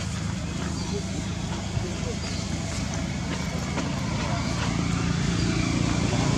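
A low, steady motor drone that grows louder over the last couple of seconds, with a constant background hiss.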